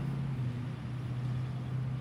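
A steady low hum over faint outdoor background noise, unchanging throughout.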